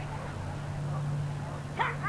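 A Bedlington terrier gives one short, high-pitched yip near the end, excited while running an agility course, over a steady low hum.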